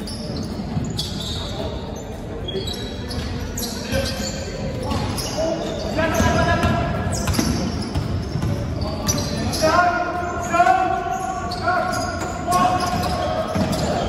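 A basketball being dribbled on a wooden gym floor, with short sneaker squeaks, echoing in a large hall. Players call out loudly in the second half.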